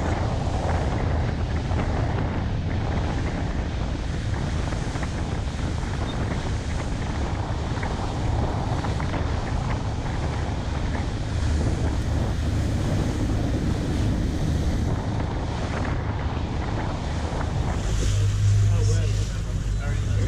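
Fishing boat running fast across open water: a steady low engine drone under the rush of the wake and wind buffeting the microphone.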